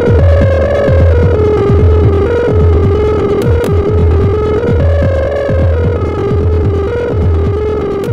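Dubstep/techno track in a stripped-back passage with no drums: a pulsing low synth bass under a wavering synth melody.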